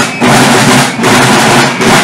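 A corps of marching field drums with brass shells playing a dense, continuous rolling marching beat. The sound is loud and surges every half second to a second.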